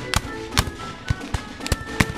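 Dramatic background music with about half a dozen scattered, irregular gunshots, a battle sound effect of musket fire.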